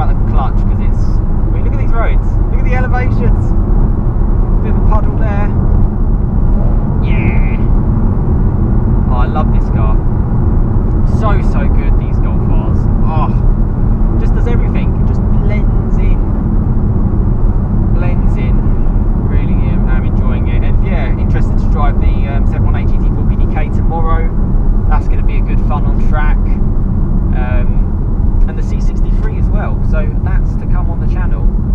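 Cabin noise of a Mk7 Volkswagen Golf R with its 2.0-litre turbocharged four-cylinder, driving at a steady pace: a constant low engine and road rumble with no sharp revving.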